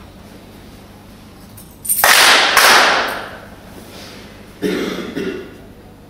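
Two loud handclaps in unison, about half a second apart, ringing on in a large hall: the ceremonial claps of an aikido closing bow toward the shrine. A short burst of voices follows about a second and a half later.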